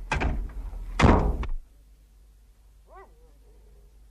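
Car door sound effect: a thunk and then a louder slam about a second in, with a low hum cutting out just after. A faint whimper, like a dog's, near the end.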